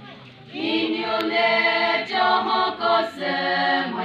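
Women's choir singing a Mao Naga folk song in unison without instruments. After a brief pause the voices come back in about half a second in and carry on in long held notes.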